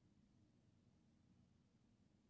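Near silence, with only a faint, even low rumble.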